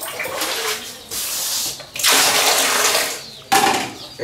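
Water splashing and pouring in a tiled washroom water basin, in several bursts, the longest and loudest in the middle and a short one near the end.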